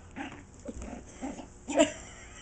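Small puppy making about five short yapping and growling sounds in play while biting at a sock on a foot, the loudest near the end.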